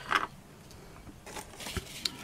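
Handling sounds at a craft table: a couple of small clicks near the start, then a soft rustle of a dry twig bird nest and its paper label being handled, with a light knock near the end as the nest is set down on the moss wreath form.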